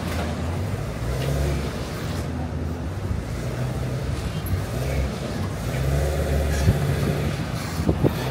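City street traffic: a steady low engine rumble from vehicles, with indistinct voices in the background and a short knock about two-thirds of the way through.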